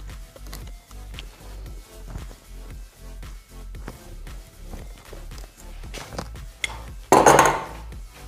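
Background music with a steady beat. About seven seconds in comes a loud, half-second crack of Scots pine wood as a bonsai tool splits a thick branch.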